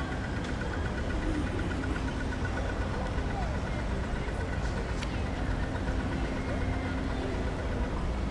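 City street ambience: a vehicle engine idling with a steady low rumble, passers-by talking, and a fast, high repeating tick that stops about halfway through.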